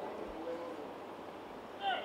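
Faint open-air ambience at a football field, with a short distant shouted call near the end.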